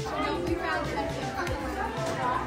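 Indistinct voices chatting, with music and a low beat playing underneath.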